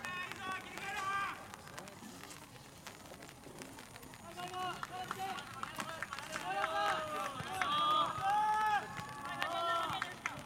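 Several young male voices shouting short, high calls across a football pitch: a few quick calls at the start, then many overlapping shouts from about four seconds in, growing louder toward the end.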